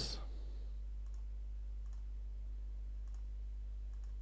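A few faint computer mouse clicks, spaced irregularly, over a steady low electrical hum from the recording chain.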